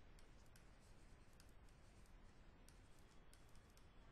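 Near silence with faint, irregular light clicks of a stylus tapping on a pen tablet as handwriting is put down.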